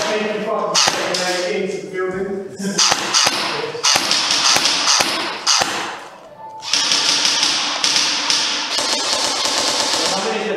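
Indistinct shouting voices, then a scattered run of sharp cracks from airsoft guns firing, followed by a steady high hiss through the last few seconds.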